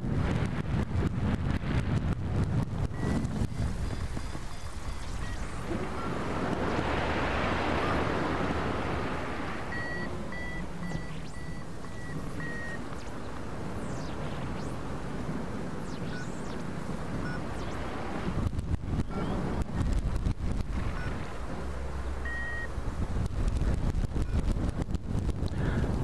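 Wind rushing over the microphone of a camera mounted on a hang glider in flight, a steady rush with rumble that swells into a louder hiss about a third of the way in. A few faint short high beeps sound now and then, in a short run about midway.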